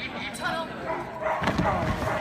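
A dog barking and yipping during an agility run, with people's voices around it; the loudest calls come in the second half.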